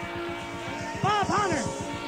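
Live rock band playing an instrumental passage, recorded from the audience: held notes over a fast steady pulse. About a second in, a lead instrument plays swooping notes that bend up and fall back twice.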